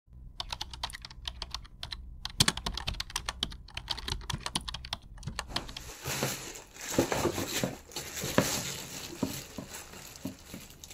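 A quick run of light clicking taps, much like typing on a keyboard, for about the first five seconds. From about six seconds in, a clear plastic delivery bag around a cardboard box crinkles and crackles as it is handled, with a few sharper snaps.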